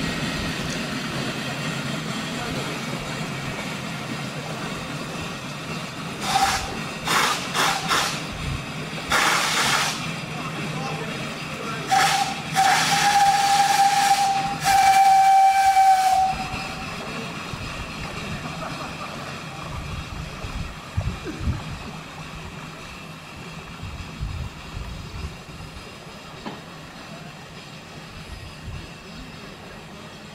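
Steam whistle on the steam narrowboat President: several short toots, a burst of hissing steam, then one long blast of about four seconds that is the loudest sound. A steady low rumble runs underneath.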